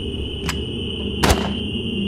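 Film soundtrack sound design: a steady high-pitched tone over a low rumble, with a sharp click about half a second in and a heavier hit a little after one second.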